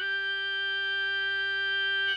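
One steady, unwavering note held on an electronic keyboard, with a bright organ-like tone.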